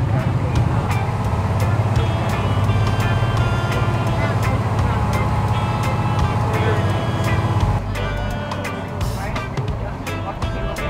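Tender boat's inboard engine running steadily under way, easing off about three quarters of the way through as the boat slows. Background music with a beat plays over it.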